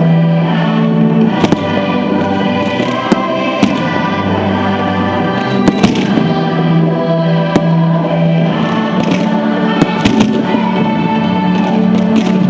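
Aerial firework shells bursting, with sharp bangs scattered every second or two, over loud music with long held notes played for the display.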